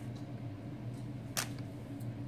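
Quiet room with a steady low hum and a single sharp click about one and a half seconds in.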